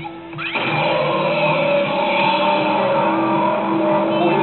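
Yamasa Pachislot Zegapain slot machine playing its in-game music through its speakers. The music drops briefly at the start, then comes back in with a rising sweep and carries on steadily.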